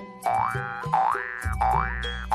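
Comic cartoon sound effect added in editing: a springy, rising 'boing' repeated three times, about every 0.7 s, over background music, with a low bass tone joining about halfway through.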